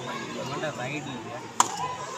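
Many young voices chattering and calling out, with a single sharp slap-like crack about one and a half seconds in.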